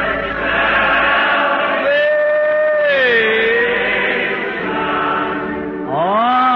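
A church congregation singing slowly together, the voices holding long notes that glide from one pitch to the next, heard on an old narrow-band recording.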